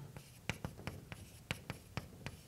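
Chalk writing on a blackboard: a quick, uneven string of short sharp taps and scrapes as the chalk strikes and strokes the board.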